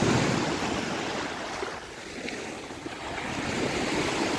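Small sea waves breaking and washing up on a sandy beach, with wind on the microphone. The surf eases off about halfway through and builds again near the end as another wave breaks.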